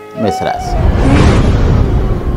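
A whoosh transition sound effect with a deep rumble swells up about half a second in and lasts over a second, over steady background music.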